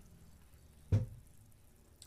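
A single short knock about a second in, over faint room hum.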